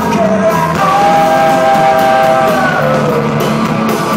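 Rock band playing live: electric guitar and drums under a lead vocal that holds one long note through the middle and slides down at its end.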